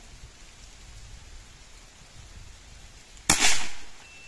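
A single shot from a CBC B57 PCP air rifle in .177 (4.5 mm): a sharp report a little over three seconds in that dies away within about half a second, the pellet clocking 283.1 m/s through the chronograph.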